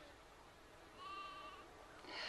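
Near silence, with one faint animal bleat about half a second long around a second in.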